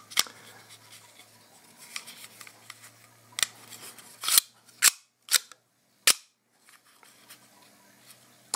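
Plastic Pez dispenser with a baseball head, its hinged head flipped back and snapping shut: a string of sharp, separate clicks, most of them bunched between about three and six seconds in.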